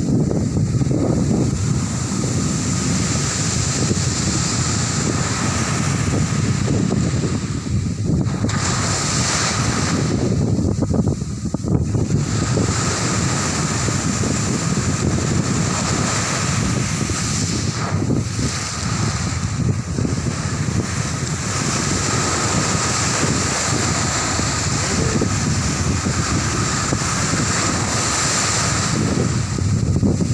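Small sea waves breaking and washing up a sandy beach in a steady rush and hiss, with wind rumbling on the microphone.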